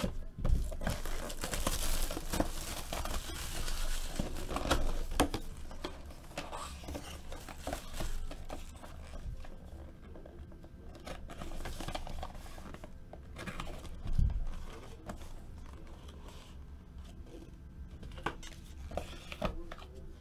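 Cardboard trading-card box and its packaging being opened and handled by hand: rustling and crinkling of card and wrapping, loudest in the first few seconds, then lighter scrapes and taps, with a dull thump about fourteen seconds in.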